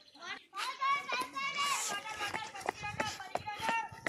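High-pitched young voices calling and shouting, one held call drawn out near the middle, with scattered sharp taps.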